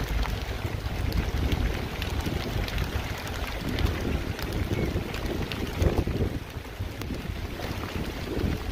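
Wind buffeting the microphone in uneven gusts, a heavy low rumble, with scattered light clicks and rustles on top.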